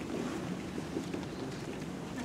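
Indistinct hubbub of a standing crowd in a large hall: a steady low murmur and shuffling, with faint footsteps as a line of people files past.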